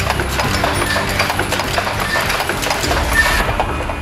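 Mask production machine running, its mechanism clattering with rapid clicks that die away about three and a half seconds in.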